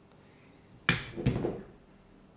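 A sharp plastic click about a second in, then a softer clatter as hard black blush compacts are handled and knocked together.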